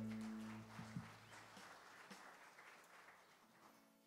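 The worship band's last chord on electric guitars and bass rings out and dies away in the first second, leaving faint rustling and small knocks of instruments being handled.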